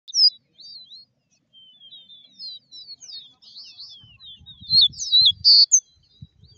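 Caboclinho, a Sporophila seedeater, singing a rapid string of high chirps and slurred whistles. The song grows louder and denser toward the end, with a loud buzzy note about five and a half seconds in.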